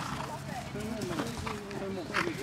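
Indistinct voices of people talking, with the hoofbeats of horses moving on grass.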